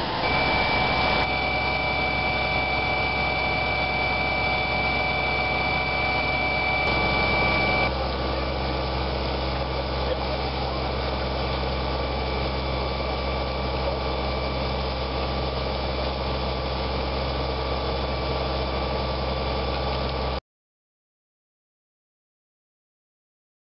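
A fire engine's engine and water pump running steadily, with a hissing hose jet. The sound changes abruptly about a second in and again around seven to eight seconds in, and cuts off suddenly near the end.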